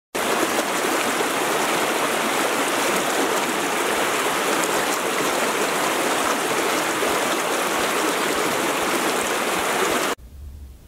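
Steady rush of running water that starts abruptly and cuts off suddenly at the end.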